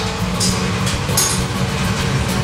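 Steady low rumbling background noise of a working commercial kitchen, with a couple of brief rustles and soft background music underneath.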